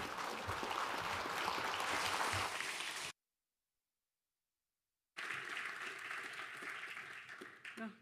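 Audience applauding steadily. The sound cuts out completely for about two seconds a third of the way in, then the applause returns and dies away.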